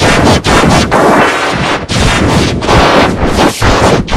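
Extremely loud, heavily distorted and clipped audio from an effects-edited clip: a dense, harsh wall of noise broken by a few brief dips.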